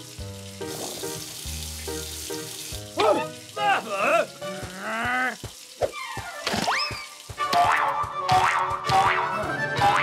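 Cartoon soundtrack: background music throughout. From about three seconds in come short, gliding, pitch-bending sound effects and wordless character vocalisations.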